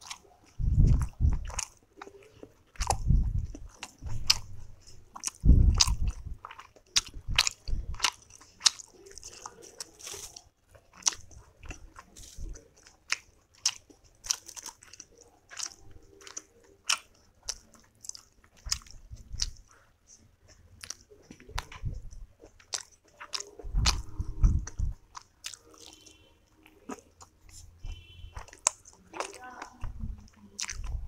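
Close-miked chewing of soft steamed momos dipped in chutney: quick wet mouth clicks and smacks come throughout, with heavier low chewing thuds in spells near the start and again about three-quarters of the way through.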